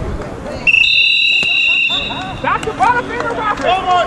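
A sports whistle blown in one long, steady blast of about two seconds, starting about half a second in, with a piercing two-pitched tone. Shouting voices follow near the end.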